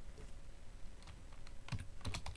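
Typing on a computer keyboard: a string of light keystrokes, closer together in the second half.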